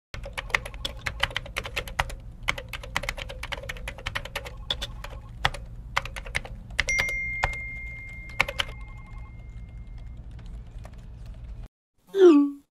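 Typing on a MacBook laptop keyboard: quick, irregular key clicks, thinning out in the last few seconds and stopping just before the end. About seven seconds in, a single high tone starts and fades away over about three seconds, over a steady low hum.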